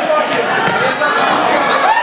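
A basketball being dribbled on a hardwood gym floor, its bounces heard under the voices of players and spectators.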